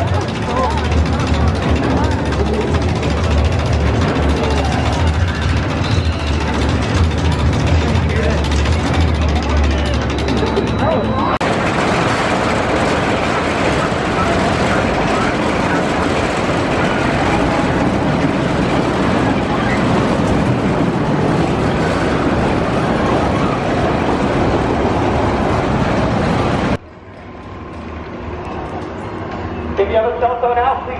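Reptilian steel roller coaster train running on its track: a loud, steady noise of wheels on steel rail, with a low hum under it for the first ten seconds or so. The noise drops off abruptly near the end.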